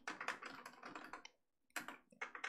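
Computer keyboard typing, faint: a quick run of keystrokes for about a second, a brief pause, then a few more keys near the end.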